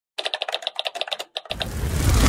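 Intro sound effect of rapid typewriter-like clicking, about a dozen clicks a second. About one and a half seconds in, a noisy whoosh with a deep rumble swells up.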